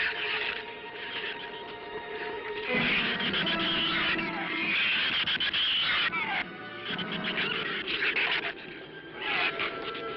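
Film-score music with long held notes, mixed with the shrill falling squeals of the giant killer shrews, a few sharp squeals coming in the second half.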